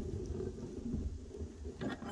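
Hand-cranked Harbor Freight ring roller running a flat steel bar through its knurled steel rollers: a low, uneven grinding rumble as the bar is fed through and bent, with a short click near the end.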